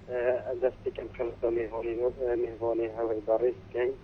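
A person's voice talking over a telephone line, thin and narrow-sounding, with no low bass or high treble.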